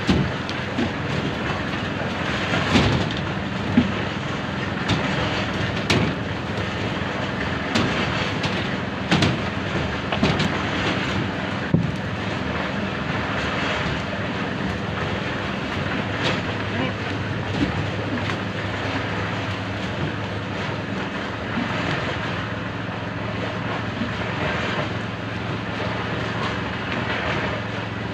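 A small engine running steadily under sharp metal clanks and knocks every few seconds, the loudest in the first half, as buckets of concrete are handled over steel rebar during a slab pour. Workers' voices are heard in the background.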